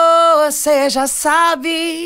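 Unaccompanied solo vocal take played back in RX6 to compare it before and after de-essing: a long held note breaks off about half a second in, followed by a few quick sung syllables and another held note.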